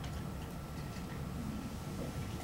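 Quiet classroom room tone: a steady low hum and a faint high steady tone, with a few faint, irregular ticks.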